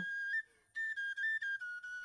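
Background music: a single thin, high, whistle-like melody line stepping between a few held notes, with a brief break about half a second in.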